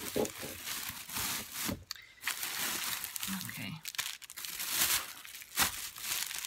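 Plastic packaging crinkling and rustling in irregular handfuls as items are handled and rummaged through, with scattered sharp crackles.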